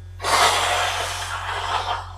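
A person breathing out hard and long close to the microphone: a sudden breathy rush that fades away over nearly two seconds.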